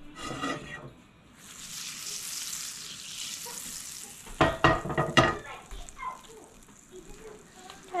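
Butter sizzling as it melts in a cast-iron skillet on a gas burner, a steady hiss that sets in about a second and a half in. Halfway through, the heavy skillet scrapes and knocks on the metal grate as it is tilted and swirled, a short run of clanks.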